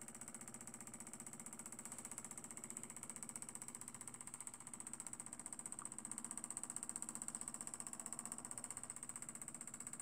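Small homemade Stirling engine running: a faint, fast and steady ticking clatter from its flywheel, linkage and pistons.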